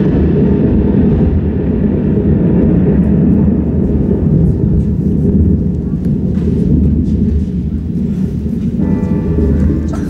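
A loud, steady, deep rumbling sound effect played during a stage blackout. Pitched musical tones enter about nine seconds in.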